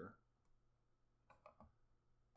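Near silence with a few faint computer mouse clicks, most of them about a second and a half in.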